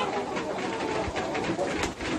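A large flock of chickens in a chicken house, many overlapping soft clucks and low calls making a steady background din.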